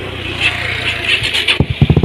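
Honda sport motorcycle engine catching about one and a half seconds in, then running loudly with a fast, even pulsing beat.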